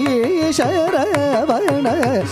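Male Carnatic vocalist singing a phrase full of fast, wavering pitch ornaments, accompanied by violin and by mridangam strokes.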